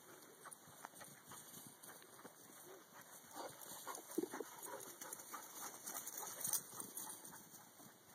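Two dogs playing and chasing on grass, with scattered soft taps of paws and a few short dog vocal sounds around the middle.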